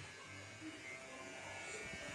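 Faint steady low hum under quiet background noise.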